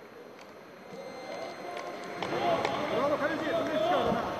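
Quiet background murmur, then from about two seconds in several men's voices shouting and calling over one another on a football pitch.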